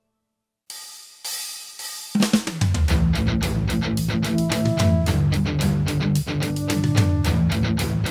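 A moment of silence, then a short noisy swell, then about two seconds in a children's song intro kicks in with drum kit, cymbals and a bass line on a steady beat.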